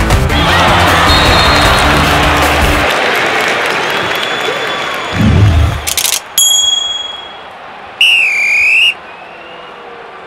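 Cartoon sound effects: a crowd cheering over background music after a slam dunk, the music cutting out about three seconds in; then a low thud, a sharp click and a bell-like ding as the scoreboard digits change, and a short warbling electronic tone a couple of seconds later.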